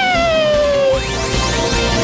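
A cartoon cat meowing: one long call that rises, then slowly falls for about a second, over bright music. Several quick rising sweeps follow about a second later.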